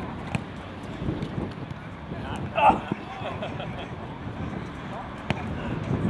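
Australian rules football training on an open field: a player's short shout about halfway through, over steady wind and field noise. There are two sharp knocks, one near the start and one near the end, typical of the ball being handballed or struck.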